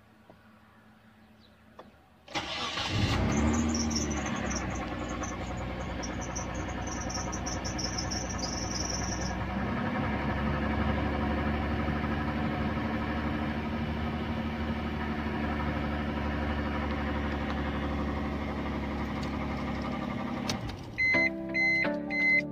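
Nissan Stagea's RB25DE 2.5-litre straight-six starting about two seconds in. It flares up briefly, then settles into a steady idle, with a high intermittent squeal over it for the first several seconds. Near the end the engine sound breaks off and electronic beeps begin.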